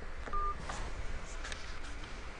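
A short electronic telephone beep on the call line, once and brief, about a third of a second in, with a few faint clicks after it, as a caller is being connected.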